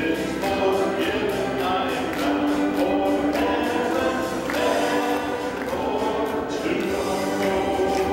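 Church congregation singing a gospel hymn led by a song leader on a microphone, over instrumental accompaniment with a steady beat.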